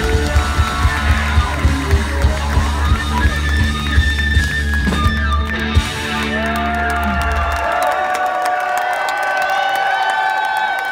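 Live rock band playing the last bars of a song, with heavy bass and a steady drumbeat of about three beats a second that stops about six seconds in. The bass rings out and dies away, and the crowd cheers and whistles.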